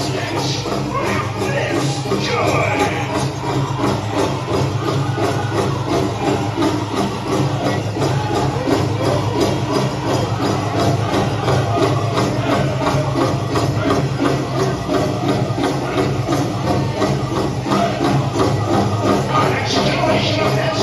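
Powwow drum group performing a grand entry song: a big drum struck in a steady, even beat under a group of voices singing together.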